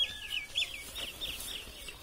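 A bird chirping over and over: short, high notes, each falling in pitch, about five a second.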